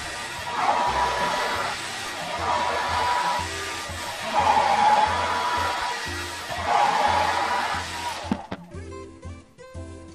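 Handheld hair dryer blowing, with a steady whine over its rush of air. The rush swells and fades about every two seconds, then stops suddenly about eight seconds in.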